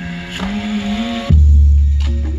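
Pop song remix played loudly through a JBL Boombox 2 portable Bluetooth speaker. A melodic line gives way, about a second in, to a deep sustained bass note that hits suddenly and slowly fades.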